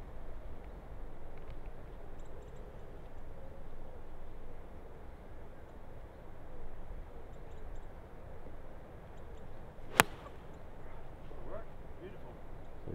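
A 7 iron striking a golf ball off the tee: one sharp crack about ten seconds in, over a steady low background rumble.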